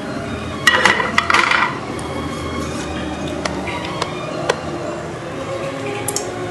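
Kitchen utensils clattering against cookware, loudest in a short burst about a second in, followed by a few single light clicks.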